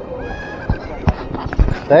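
A few low thumps of footsteps while walking on a sidewalk, with a faint high-pitched call in the first second. A voice begins "thank you" at the very end.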